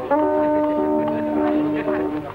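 Film background music: a long held low horn-like note with shorter melody notes moving around it, fading about two seconds in.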